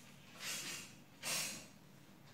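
Compass pencil scraping across paper as it draws an arc, in two short strokes.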